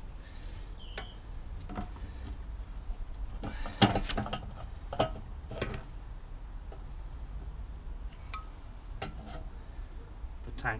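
Scattered plastic clicks and knocks from hands handling a small portable generator and taking the cap off its top, over a steady low rumble.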